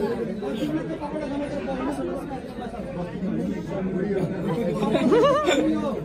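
Several people talking over one another in a reverberant hall, with one voice rising louder about five seconds in.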